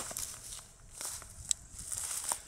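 Faint handling rustle and small ticks, with one sharp click about one and a half seconds in.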